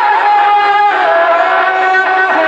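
A man singing a manqabat (Urdu devotional poem) into a microphone, holding one long note that steps down in pitch about a second in.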